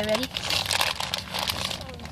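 Plastic candy bag crinkling and rustling as it is handled, a dense run of quick crackles.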